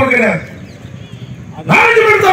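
A man speaking loudly in Tamil into a handheld microphone, his voice carried over a loudspeaker, with a pause of about a second in the middle.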